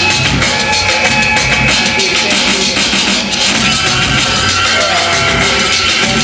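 Live electronic instrumental hip-hop beat played on sampler and drum-machine gear, with a steady drum beat under layered sampled sounds.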